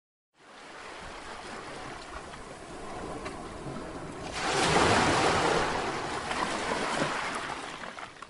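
Ocean waves washing on a shore, a wave surging louder about halfway through.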